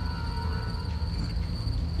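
Crickets chirring in a steady, continuous high-pitched tone, over a low steady drone.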